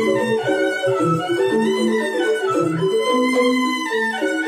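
Balinese rindik ensemble playing: bamboo xylophones ring out in quick interlocking patterns under a held, singing melody on the suling bamboo flute. The low bass notes drop out near the end.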